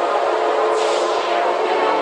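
Electronic tekno music: a dense, noisy synth texture with a downward sweep a little under a second in, and no bass or kick drum.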